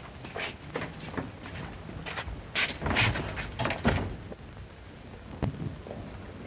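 A string of irregular knocks and thuds from a group of people moving about, thickest about two and a half to four seconds in, with one sharp knock near the end, over a steady hiss from an old film soundtrack.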